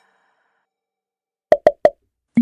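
Three quick cartoon pop sound effects in a row, about a fifth of a second apart, near the end. They match the quiz's three answer boxes popping onto the screen.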